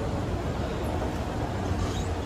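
Escalator running, a steady low rumble with even background noise throughout.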